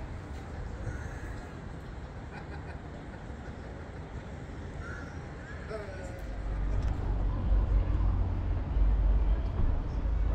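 A crow cawing a few times over open-air background noise; about six seconds in, a loud low rumble sets in.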